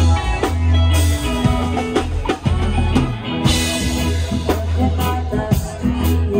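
Live rock band playing: a drum kit keeping a steady beat with cymbals, electric guitar, and long low bass notes.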